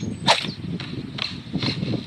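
Cartoon sound of noisy eating: a quick run of short crunching, munching sounds as a character chomps cereal off a spoon, the 'nyam nyam' of greedy eating.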